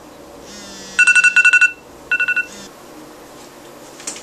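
Phone countdown timer's alarm going off because the 30-minute timer has run out. A rapid run of high, two-toned electronic beeps comes about a second in, then a shorter run about a second later.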